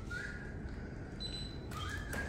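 A few soft, high whistle-like tones, each a short held note, some with a small upward slide at the start, over a low steady background rumble.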